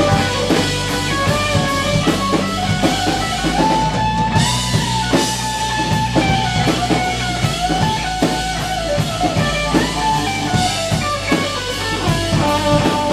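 Live instrumental rock from electric guitars and a drum kit: a held lead guitar melody with slight pitch bends over steady drum hits.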